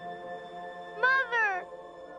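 Two short cries from a young cartoon dinosaur, each falling in pitch, about a second in, over a sustained chord of soft background music.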